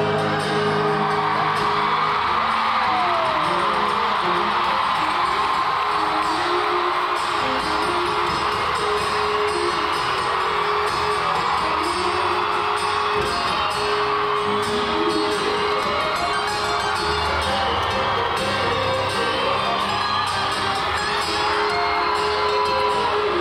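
Two acoustic guitars, one of them a double-neck acoustic, playing an instrumental passage of a live rock ballad, with held notes throughout. An arena crowd whoops and cheers underneath.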